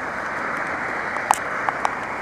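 Steady rain pattering on the camera and the walker's clothing, an even hiss, with three short sharp taps in the second half, likely drops striking the camera.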